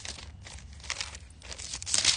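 Thin Bible pages being leafed through: a run of irregular crisp paper rustles and crinkles, the loudest near the end.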